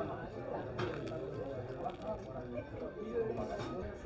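Low background chatter of several people talking at once in a tapas bar, the voices overlapping with none standing out.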